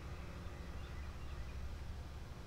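Quiet outdoor ambience: a steady low rumble, with a few faint chirps about a second in.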